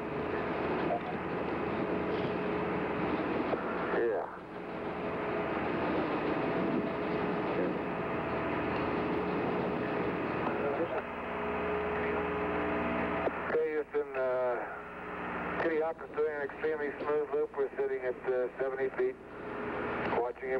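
Steady hiss from an open radio link, with faint steady hum tones, for about thirteen seconds; then voices come over the radio near the end.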